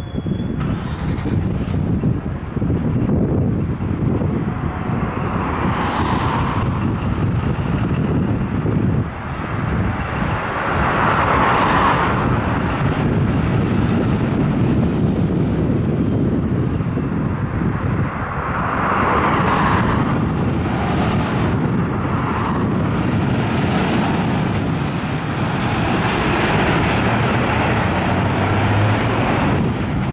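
Diesel engine of a MAN fire engine running as the truck pulls out of its bay and drives off, a steady low rumble with a few brief swells of higher noise.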